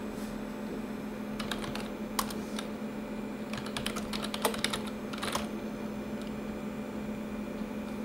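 Typing on a computer keyboard: short bursts of key clicks in small clusters with pauses between them, over a steady low hum.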